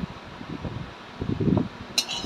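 A low, uneven rumble, swelling about three quarters of the way through, then a sharp click of a metal spatula against the iron kadai at the very end.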